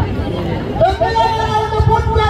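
Crowd hubbub from many people talking at once. About a second in, a long, held, slightly wavering pitched sound, voice-like, starts and carries on over the chatter.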